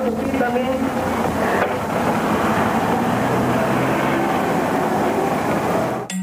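Steady noisy rumble and hiss, like street traffic, on a low-quality recording, with faint indistinct voices in the first couple of seconds; it cuts off sharply at the end.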